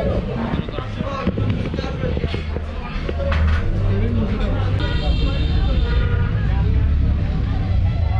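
Chatter of diners in a busy restaurant over a steady low rumble, with a short high-pitched tone lasting about a second, about five seconds in.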